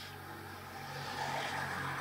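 A low, steady engine hum, growing slightly louder.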